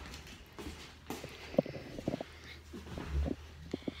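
Irregular light knocks and clicks with a couple of brief low rumbles: handling noise from the phone being carried around a small kitchen, with footsteps.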